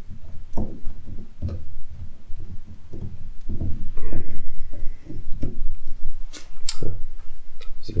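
A man's voice, low and indistinct, in a small room.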